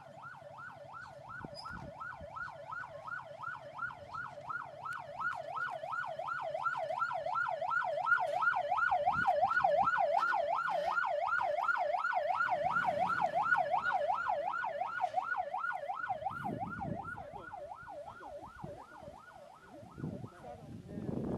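Vehicle-mounted electronic siren in fast yelp mode, sweeping quickly up and down about three to four times a second. It grows louder as the vehicle approaches, peaks about halfway through, then fades as it drives away.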